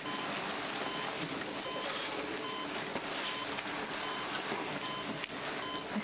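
Operating-room patient monitor beeping steadily, a short beep a little faster than once a second, over a dense background wash.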